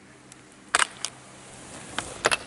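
Skis on packed snow: a sharp scrape of the edges about three quarters of a second in and a shorter one just after, then a hiss that grows louder as the skier nears.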